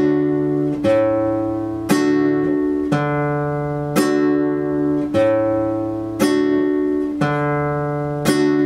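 Nylon-string classical guitar played slowly, one chord struck about once a second and left to ring, the bass note under the chords changing from stroke to stroke.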